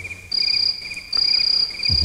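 Insect chirping, cricket-like: a continuous high trill with repeated short pulsed chirps. It is left exposed while the chanting voice is silent.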